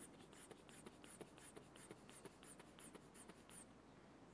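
Manual blood-pressure cuff being pumped up by squeezing its rubber bulb: a faint, even run of short squeezes, about three or four a second, each with a brief hiss of air, stopping shortly before the end.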